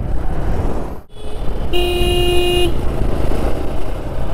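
A vehicle horn sounds once, a steady tone lasting about a second, over the running motorcycle's engine and wind noise. The sound drops out briefly about a second in.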